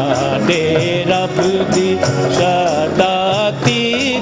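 Punjabi devotional worship song continuing: a melody of held, gliding notes over a steady percussion beat of about four strokes a second, with clapping.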